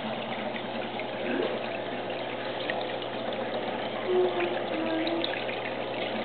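Steady trickle of water running in an aquarium tank.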